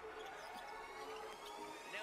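Faint arena sound of a basketball being dribbled on a hardwood court.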